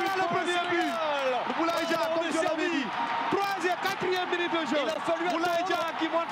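A man's voice shouting excitedly without pause, pitch rising and falling in quick calls: a commentator's call of a goal.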